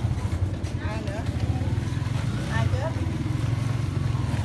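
A steady low engine rumble, with faint voices over it about a second in and again past the middle.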